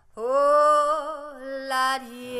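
Soundtrack music: a singing voice holds one long note with a gentle vibrato, and a brighter, louder chord briefly joins near the end.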